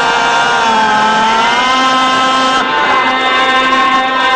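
A man's voice singing a Saraiki mourning verse in long, drawn-out held notes that bend slightly in pitch.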